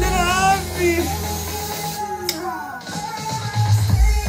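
Music with a heavy bass line playing loud through a Philips NX5 tower party speaker. The bass drops out for about two seconds mid-way and comes back hard near the end.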